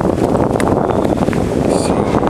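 Wind buffeting a handheld camera's microphone, a loud continuous rumbling rush.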